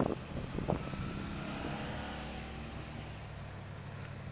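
A steady low engine drone, with some handling or footstep noise in the first second.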